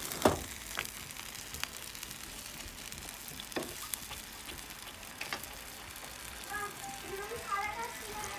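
Cauliflower florets sizzling gently in a pan of sauce, with a few sharp clicks of a utensil against the pan as they are stirred.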